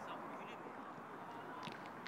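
Faint outdoor training-pitch ambience: distant voices calling over a steady background hiss, with a few sharp knocks near the end.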